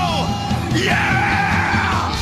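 Classic rock song: a held note drops away at the start, then a singer's high, bending yell over the band.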